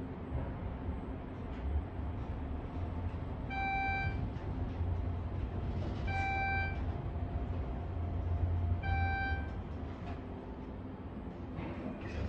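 Schindler 400A machine-room-less traction elevator car running between floors with a low, steady ride rumble that eases near the end as the car stops. Three identical electronic beeps from the car's speaker sound about two and a half seconds apart.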